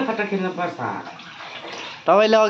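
A ladle dipping into a large aluminium pot of thin soup broth and lifting it out, the liquid splashing and pouring.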